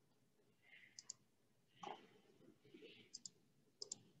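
Faint small clicks, three quick pairs of them, with soft rustling in between.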